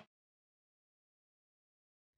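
Silence: the sound track drops out entirely.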